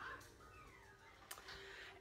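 Near silence: faint room tone, with one soft click a little past the middle.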